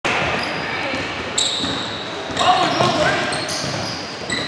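Sneakers squeaking on a hardwood basketball court in a gym, in several sharp high squeals, with shouting voices from about halfway in.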